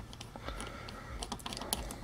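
Small irregular clicks and ticks of a precision screwdriver turning screws into the plastic frame of a small dual cooling-fan assembly, with a faint steady low hum underneath.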